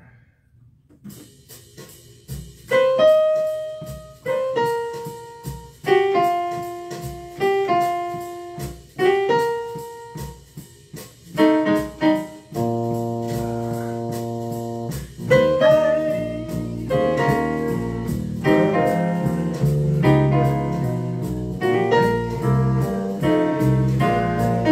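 Solo piano with no singing. It opens with separately struck chords, each left to ring and fade, then holds one long chord, then moves into a busier, fuller passage.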